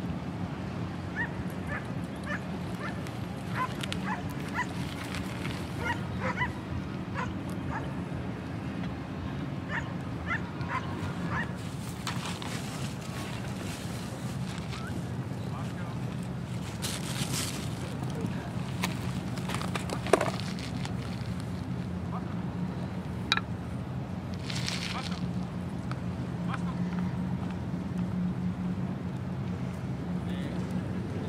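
A dog whimpering and yipping in short calls, most of them in the first dozen seconds, over a steady low hum.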